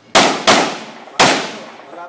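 Three pistol shots from an IPSC Open-division handgun, each followed by a short ringing echo. The first two come close together, and the third comes about three-quarters of a second later.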